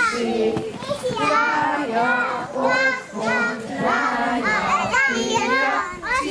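A group of women and toddlers singing a children's circle-game song together, with children's voices calling out over it.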